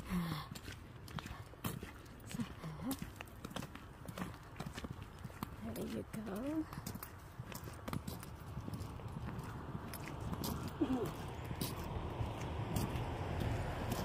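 Footsteps of winter boots on a wet concrete sidewalk, a steady walking stride of sharp clops. Over the last few seconds a passing car's tyre noise swells underneath.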